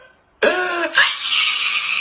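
A man wailing in an exaggerated crying fit. It starts about half a second in and stops abruptly at the end. The sound is tinny and thin, with the top end cut off.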